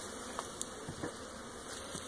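Honeybees buzzing steadily over an opened hive, roused by smoke and the inspection, with a few faint ticks.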